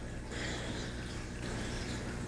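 Quiet, steady background hiss with a low hum: room tone, with no distinct mechanical click or other event.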